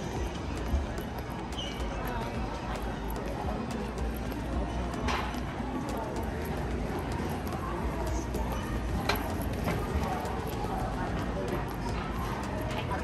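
Busy warehouse-store ambience: a steady din of indistinct background voices and music, with a run of light, irregular rattling clicks.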